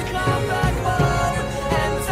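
A 2000s pop-rock song playing, with sustained melodic notes over a steady drum beat.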